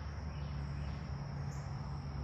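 Insects in the trees giving a steady, unbroken high trill, over a low steady hum.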